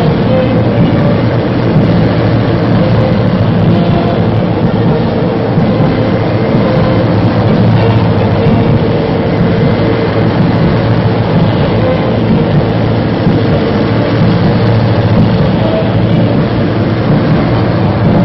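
A column of military motor vehicles (trucks, armored cars and artillery tractors) rumbling past with their engines running steadily. Band music sits faintly underneath.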